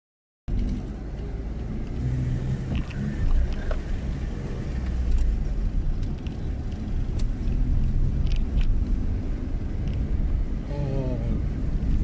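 Car cabin noise while driving slowly: a steady low rumble from the engine and road, starting abruptly about half a second in.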